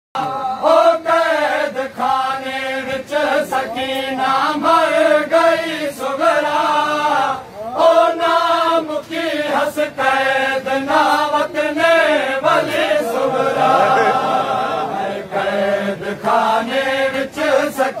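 A group of men chanting a noha, a mourning lament, in unison, the melody rising and falling in phrases. Frequent sharp slaps run through it, the chest-beating of matam.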